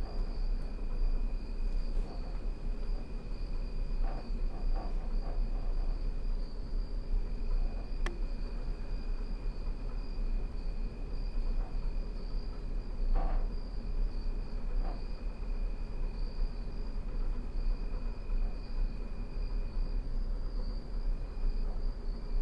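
Steady high insect trill, cricket-like, over a low rumble of ambience. A few faint clicks and taps come about four, eight and thirteen seconds in.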